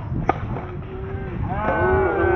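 A softball bat striking the ball with one sharp crack about a quarter second in. Long drawn-out shouts and yells follow, growing busier near the end.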